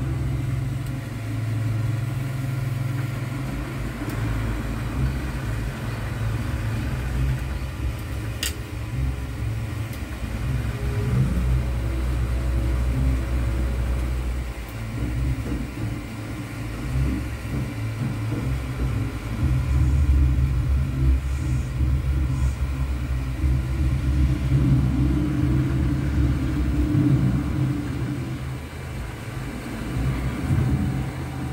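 A steady low rumble that shifts in level every few seconds, with one sharp click about eight seconds in.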